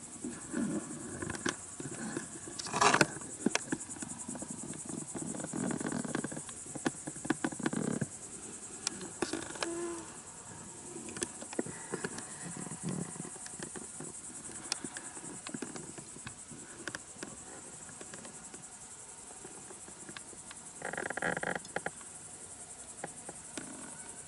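Crickets chirping in a steady, high-pitched rapid trill, with scattered clicks and short rustles over it, the loudest rustle about three seconds in.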